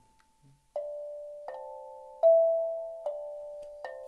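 Small steel tongue drum struck with a mallet: five single notes about three-quarters of a second apart, each ringing on into the next, the middle one the loudest.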